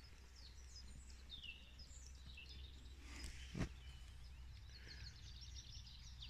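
Songbirds chirping and singing faintly in bankside trees. A single sharp knock a little past halfway is the loudest sound.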